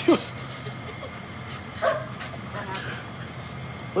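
A dog giving a few short barks, the clearest about two seconds in, with voices in the background.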